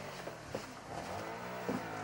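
Faint background murmur of several voices talking at once: low pub chatter.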